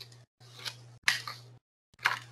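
A few short rustling, breathy noise bursts picked up by a video-call microphone. Each burst carries a low steady hum that cuts in and out with it. The strongest burst comes about a second in.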